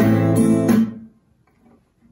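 Classical acoustic guitar strummed, a full chord ringing and then cut off sharply about a second in.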